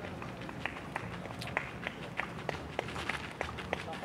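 Running footsteps on a gravel path: a quick series of sharp steps, several a second, over faint background voices.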